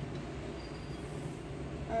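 Steady low background rumble with no distinct events; a child's voice begins right at the end.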